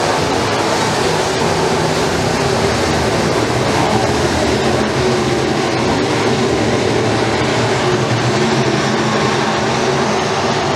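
A pack of dirt-track modified race cars running at racing speed, their V8 engines blending into one loud, steady drone.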